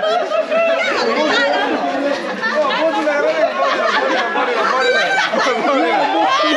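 Group of people talking and calling out over one another: lively, overlapping chatter that does not let up.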